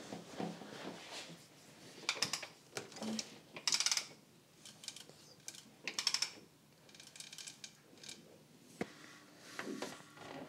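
Short, intermittent spells of quiet mechanical clicking and scraping as a car engine's crankshaft is turned by hand to move a piston up and down in its cylinder.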